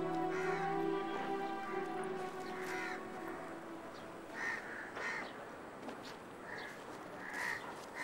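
Soft background music with held notes fades out over the first few seconds, then crows caw several times with short, separate calls in the second half.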